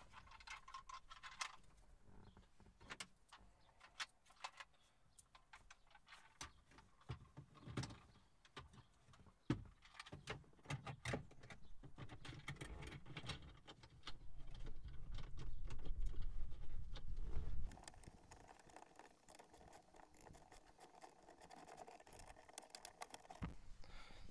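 Irregular small clicks and rattles of plastic dashboard parts being handled and fitted by hand as the start button and trim are put back. About two-thirds of the way through there are a few seconds of louder, lower handling noise.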